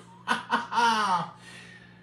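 A person's short laugh, breathy and falling in pitch, lasting about a second, with a faint steady hum beneath.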